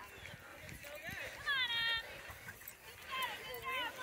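Distant voices of children and adults calling and shouting, faint, with a louder high-pitched call about a second and a half in and more calls near the end.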